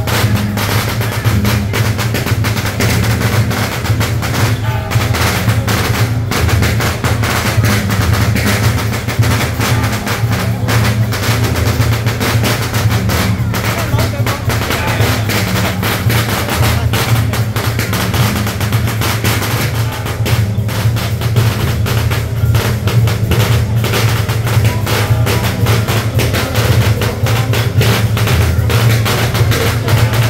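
Dense, rapid percussion of a temple procession, drums and metal percussion struck continuously in a fast clattering stream over a steady low boom, accompanying a palanquin being carried.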